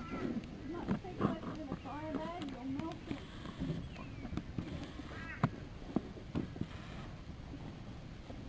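Freshly lit wood fire of branches and sticks crackling in a cinder-block fire pit, with irregular sharp pops.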